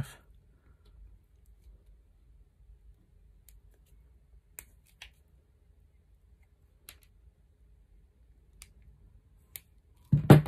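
Combination pliers cutting and working the outer sheath of a 2.5 mm² TPS cable to strip it. A handful of faint, sharp snips and clicks come at irregular intervals, with quiet handling between them.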